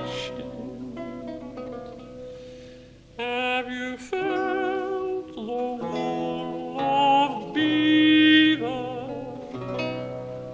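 Lute playing alone for about three seconds, plucked notes dying away, then a countertenor singing held notes with vibrato over the lute accompaniment.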